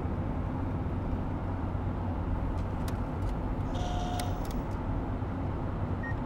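Steady road and engine drone heard from inside a moving car's cabin, even in level throughout, with a few faint ticks near the middle.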